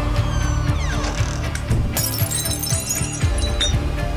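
Music with a steady beat, with a glass smashing about halfway through: a sudden crash followed by a bright tinkling of shards lasting over a second. A few falling, gliding tones sound just before it.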